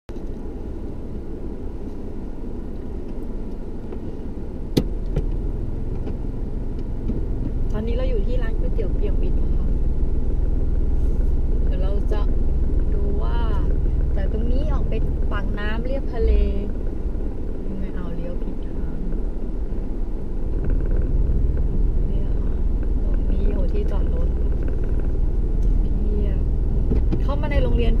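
Car cabin noise while driving: a steady low rumble of engine and tyres heard from inside the car, with a single sharp click about five seconds in.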